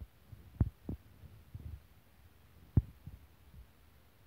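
Low, short knocks in two pairs, each pair about a third of a second apart: the wheels of a Thameslink Class 700 train passing over rail joints, heard inside the carriage.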